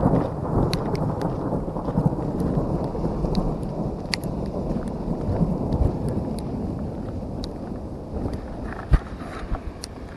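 Thunder from a nearby lightning strike: a long, low rolling rumble that slowly dies away.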